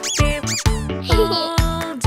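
Children's background music with a steady beat, with two quick squeaky cartoon sound effects near the start, each sweeping up and back down in pitch.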